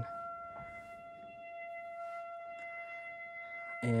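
Buchla 200 modular synthesizer sounding a steady high tone with a few fainter overtones over a faint noise hiss.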